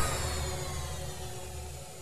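The dying tail of a radio segment-transition whoosh: a wash of sound with a few faint held tones, fading slowly away.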